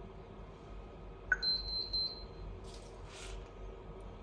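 Video intercom touchscreen monitor giving a short key-press beep as OK is pressed. The system's buzzer then sounds three quick high-pitched beeps, signalling it has entered card-adding mode. Two brief soft rustles follow.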